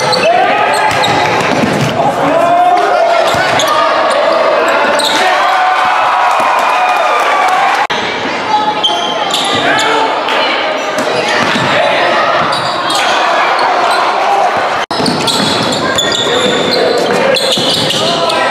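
Basketball game in a gym: many overlapping crowd and bench voices calling out over a dribbled basketball bouncing on the hardwood floor, in a reverberant hall. The sound briefly cuts out twice, about 8 and 15 seconds in.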